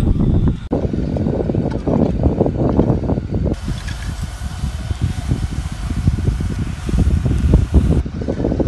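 Wind buffeting an outdoor microphone: a heavy, gusty low rumble. The sound changes abruptly about a second in and again about halfway through.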